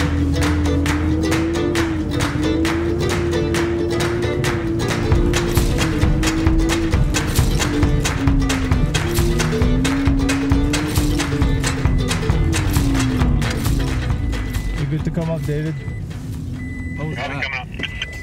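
Background music: a fast, even plucked rhythm, about four strokes a second, under a smooth gliding melody, fading out near the end.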